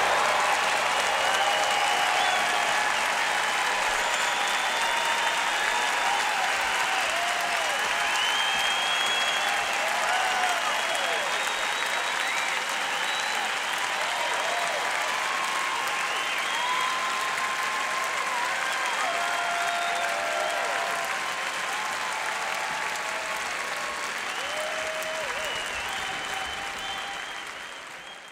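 Auditorium audience applauding, with cheering voices rising above the clapping. It eases slowly and fades out near the end.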